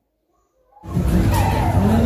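Silence, then the loud din of a funfair cuts in abruptly a little under a second in: a dense, steady wash of noise with wavering tones running through it.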